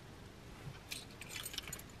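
Faint clinks of a bunch of keys and metal keychain charms being handled, with a few small clicks about a second in and toward the end.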